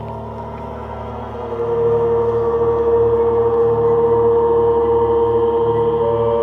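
Ambient drone music of layered, sustained ringing tones. A strong mid-pitched tone swells in about a second and a half in, over a low tone that pulses evenly beneath.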